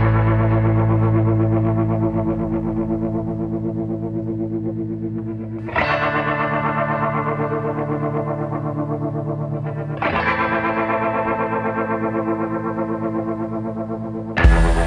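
Music: distorted electric guitar chords with effects, a new chord struck about every five seconds and left ringing with a pulsing shimmer.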